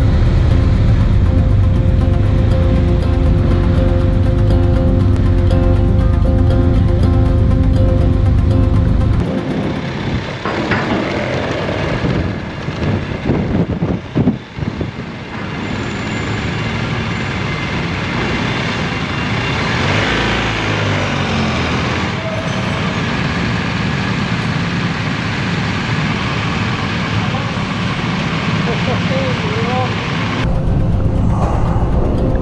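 BMW R1250 GS motorcycle riding, with a heavy steady rumble on the helmet-camera microphone for about the first nine seconds. This cuts off abruptly into the echoing din of a ferry's vehicle deck: engines running, a few knocks and distant voices.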